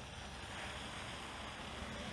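Faint, steady outdoor background noise, a low rumble with a soft hiss and no distinct events.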